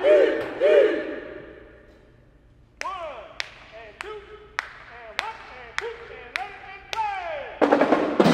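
Two short yelled calls from the band that ring out in a reverberant gym, then a percussion count-off of eight sharp, evenly spaced clicks, a little under two a second. Near the end the full marching band of brass and drums comes in loudly.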